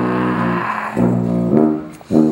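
A brass band with tuba playing two long, low brass notes, each about a second, with a wash of noise over the first.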